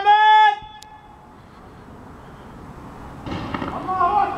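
A voice chanting "Allahu Akbar" ends on a long held note in the first half-second. A quiet lull with a faint hiss follows, broken by one sharp click about a second in and a short rushing noise near the end.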